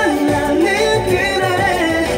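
A Korean pop song playing, a singing voice carrying the melody over the backing track.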